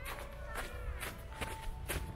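Footsteps crunching on packed snow, about two steps a second.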